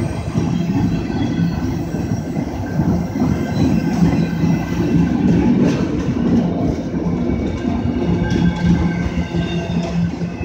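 Loaded autorack freight cars rolling past at close range: a steady rumble and clatter of steel wheels on the rails, with a faint high wheel squeal coming and going.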